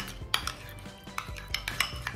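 Metal spoon stirring a thick gochujang sauce in a ceramic bowl, with a few light clinks and scrapes of the spoon against the bowl.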